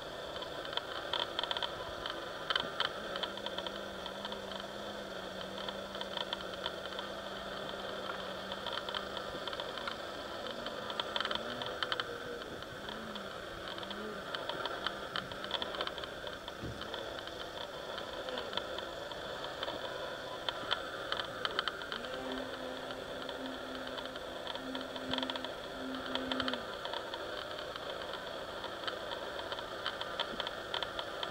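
Electric motor and propeller of a 60-inch Extreme Flight Edge 540 aerobatic RC plane buzzing as it flies, with a low hum that comes and goes as the throttle changes and scattered crackles.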